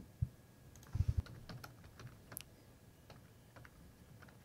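Typing on a computer keyboard: faint, scattered keystrokes with a quick run of taps about a second in.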